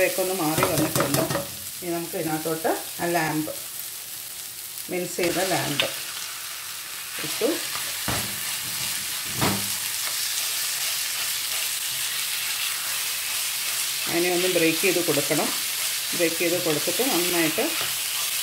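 Onion and spice masala frying and sizzling in a nonstick frying pan, stirred and scraped with a plastic spatula. About five seconds in, the sizzle grows louder and steadier as minced lamb goes into the hot oil.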